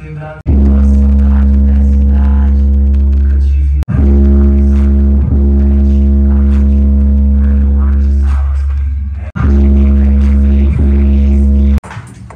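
Competition car audio 'paredão' speaker walls at full volume, playing long, deep bass-heavy drones with stacked held tones, cut off abruptly about half a second in, near four seconds, after nine seconds and just before the end.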